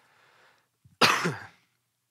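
A man coughs once to clear his throat, a short sharp burst about a second in with a falling voiced tail, after a faint breath.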